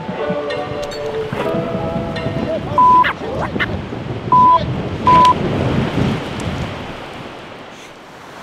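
Music for the first couple of seconds, then shouted voices bleeped out by three short, loud, single-pitch censor beeps, over a steady rushing noise of wind and river water. The noise fades toward the end.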